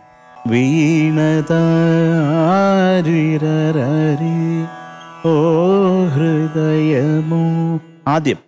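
A man singing a Carnatic-style phrase without accompaniment, with long held notes decorated by quivering ornaments. It comes in two phrases, with a short break about five seconds in.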